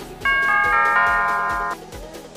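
Electronic background music with a steady beat. About a quarter second in, a notification-bell chime sound effect comes in over it: several bright ringing tones, the loudest thing here, lasting about a second and a half.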